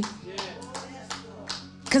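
Scattered hand claps from a congregation, about half a dozen, spaced unevenly, with a faint voice in the background.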